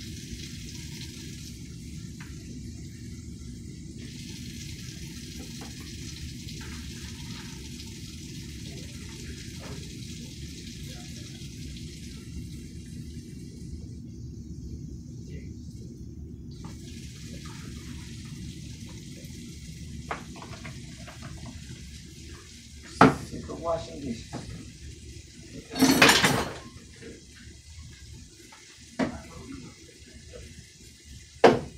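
Kitchen tap running into a sink as dishes are washed by hand, a steady rush of water. Late on, several loud clatters of dishes knocking together in the sink.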